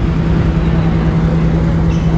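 A car engine running at a steady idle: an even, unbroken drone with a constant low hum.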